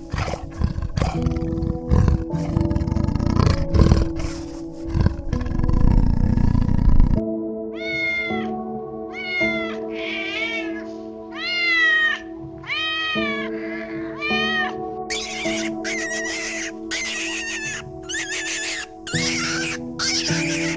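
Kitten meowing: a run of about seven short, rising-and-falling meows starting about eight seconds in, followed by harsher, noisier cries. Before the meows, a low, rough sound from a big cat runs for about seven seconds. Steady background music plays throughout.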